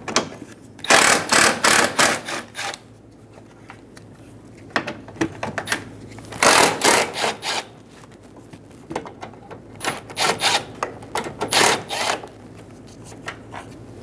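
Milwaukee M12 Fuel cordless ratchet whirring in about five short bursts with pauses between, backing out the 10 mm bolts of a headlight bracket.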